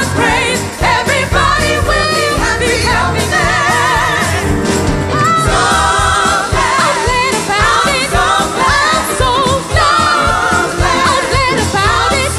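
Live gospel music: female gospel singers singing with a wavering vibrato, more than one voice at once, over a band accompaniment.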